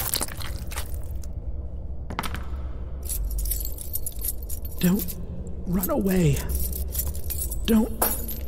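A man's wordless groans, short and falling in pitch, about five and six seconds in and again near the end, with scattered clicks and scraping over a steady low hum.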